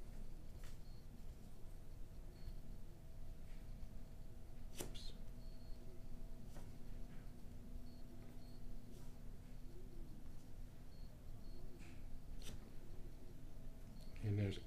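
Quiet room tone with a faint steady hum, scattered soft taps and clicks, the clearest about five seconds in, and several very short, faint high beeps, some coming in pairs.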